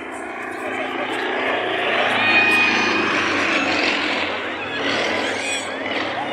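A Sukhoi aerobatic plane's nine-cylinder radial engine running during aerobatics overhead. It swells to its loudest about two to three seconds in and then eases off, with voices underneath.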